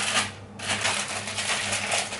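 Crinkling and rustling of plastic instant-noodle packaging being handled and torn open, in short irregular spurts, over a low steady hum.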